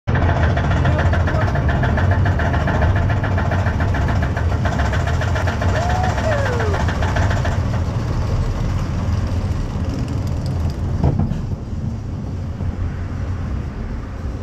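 Sooper Dooper Looper steel roller coaster car climbing and running on its track. A fast, even clatter of the lift chain lasts for about the first seven and a half seconds and then stops, leaving a steady low rumble with a single knock near the end.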